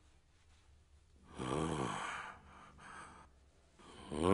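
A man's low, strained groan about one and a half seconds in, its pitch rising and falling, followed by a short breathy exhale; otherwise near silence.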